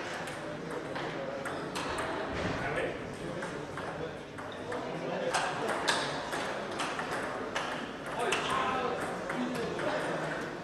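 Table tennis ball clicking off bats and table during a rally, a series of sharp taps coming fastest about five to six seconds in, with voices in the hall behind.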